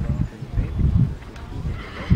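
Horse cantering on grass, its hoofbeats coming as irregular low thuds.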